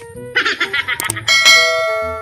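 Subscribe-button animation sound effects: a click, a short warbling effect, a second click, then a bell chime that starts about one and a half seconds in and rings on, slowly fading.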